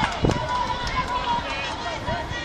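Voices of children and adults calling out across a football pitch during a youth match, with one high call held for nearly a second.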